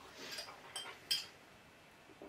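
Faint handling noises with a few short, light clicks, the sharpest two about a third of a second apart near the middle.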